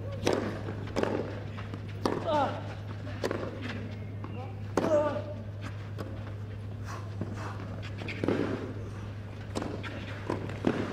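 Tennis ball struck by racquets on a clay court: a serve and then a rally, with sharp hits every second or so. A player's short vocal grunts come with a couple of the shots.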